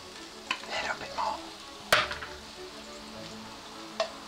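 Parsnips sizzling in oil and coconut nectar in a nonstick wok as they are stirred, the sweetener caramelising into a glaze. There is a sharp knock about two seconds in.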